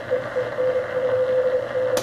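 Heathkit HR-10B vacuum-tube amateur receiver on the 40-meter band playing a Morse code (CW) signal as a mid-pitched beat tone, with a few short breaks, over band hiss from an external speaker. A front-panel switch clicks near the end and the hiss stops.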